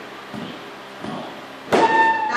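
Low room noise with a few soft knocks, then about a second and a half in a folk group strikes up together with a sharp first beat: bodhran strokes under sustained accordion and tin whistle notes, with guitar.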